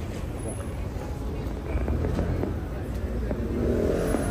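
Steady low rumble of road traffic with indistinct voices in the background, getting louder toward the end.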